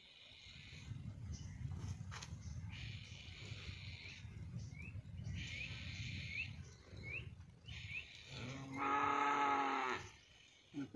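A cow mooing: one long, steady call near the end, the loudest sound here, after several seconds of a low, rough rumble.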